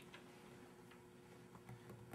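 Near silence: room tone with a faint steady hum and a few faint, irregular ticks.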